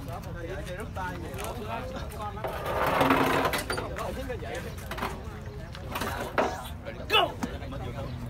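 Spectators chattering in a crowd, with a louder burst of noise about three seconds in and a short sharp cry near the end.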